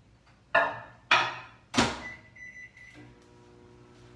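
Built-in microwave oven being loaded and started: three sharp knocks in the first two seconds as the dish goes in and the door is shut, a short beep, then the oven starts running with a steady hum.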